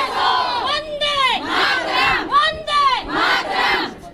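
Crowd of women protesters shouting slogans in unison: a short chanted phrase repeated over and over in a steady rhythm, about two shouts a second.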